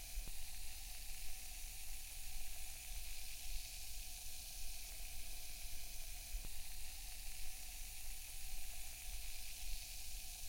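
Fizzy lemon drink fizzing in a glass: a steady crackling hiss of bubbles popping.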